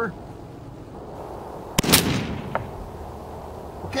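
A single shot from an 18-inch Bear Creek AR-15 firing a 77-grain match load, about two seconds in, with a short echo trailing off. A faint tick follows about half a second later.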